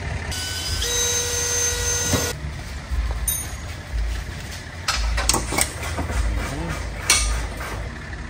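Cordless power drill running in one steady whine for about two seconds, then knocks and clatter as body panel parts are handled and fitted.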